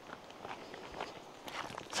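Faint footsteps: a few soft scuffs on the ground.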